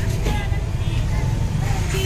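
Steady low rumble of outdoor background noise, with faint voices.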